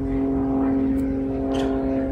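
A steady hum of a motor or engine held at one even pitch, with no rise or fall.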